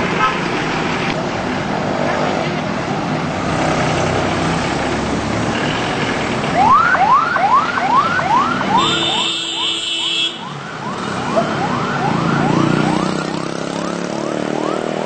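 Ambulance siren in a fast rising yelp, about two to three upward sweeps a second, starting about halfway through over street traffic noise. A steady blaring tone cuts in briefly about nine seconds in.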